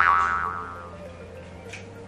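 A springy, twanging cartoon-style sound effect: the pitch shoots up, then the sound rings and fades over about half a second. Soft background music continues under it.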